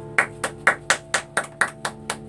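Steady hand claps, about four a second, as applause for a just-finished acoustic guitar piece. The last guitar chord is still ringing faintly underneath.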